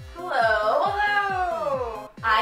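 A long, high, meow-like voice call that rises and then slowly falls in pitch, lasting nearly two seconds. Under it runs electronic background music with a kick drum at about four beats a second.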